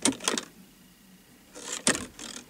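Clicks from the ignition switch and relays of a 2010 Saab 9-3's center-console ignition as the key is worked: a couple of sharp clicks near the start and another cluster near the end, with a faint high tone between.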